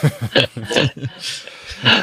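Laughter: short breathy voiced bursts, with a breathier stretch in the second half.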